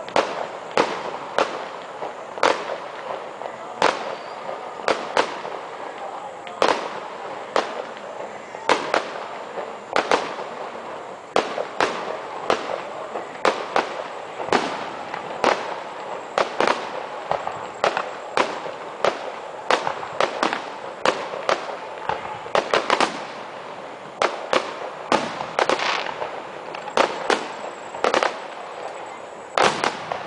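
Aerial fireworks shells bursting one after another, sharp booms coming irregularly about one to two a second over a steady background rumble.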